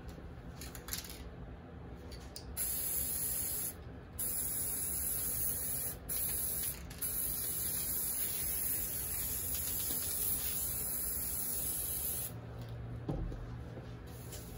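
Aerosol spray paint can spraying: a loud, steady hiss that starts a few seconds in, breaks off briefly three times, then runs on in one long spray that stops about two seconds before the end.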